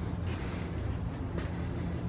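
A steady low hum over faint background noise, with a couple of faint clicks.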